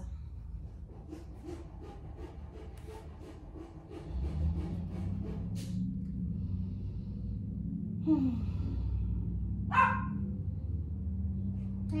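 A dog vocalizing: a falling whine about eight seconds in, then a single short bark, over a steady low hum.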